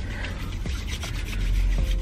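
Hands rubbing together, spreading hand sanitizer, a soft continuous rubbing with small ticks, over a low rumble that grows louder near the end.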